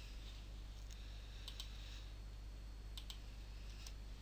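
Faint computer mouse clicks, a few single clicks and a couple of quick pairs, over a low steady hum.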